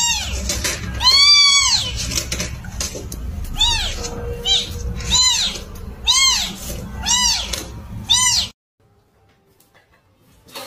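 Kittens meowing: a run of about eight short, high cries, each rising and falling in pitch, roughly one a second, which cut off suddenly about eight and a half seconds in.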